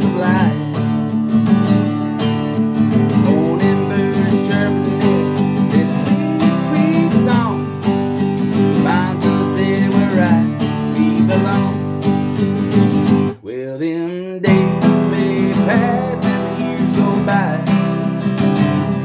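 Acoustic guitar strummed steadily in chords, as an instrumental passage between sung verses. About two-thirds of the way in, the strumming breaks off for about a second, then picks up again.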